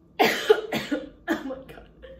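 A woman coughing, about four coughs in quick succession, from the fumes of a big sniff of straight tequila catching in her throat.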